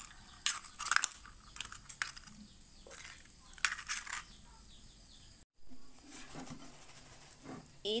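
Kitchen handling noises at a frying pan on the stove: a scatter of light clicks and scrapes of utensils over a faint steady hiss. The sound drops out for a moment just past halfway.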